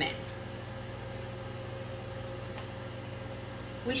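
Countertop microwave oven running, a steady hum with a thin high tone over it, as it heats chocolate chips and sweetened condensed milk to melt them.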